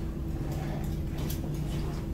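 Steady low room hum with a few faint light clicks as small lab items are handled on a bench.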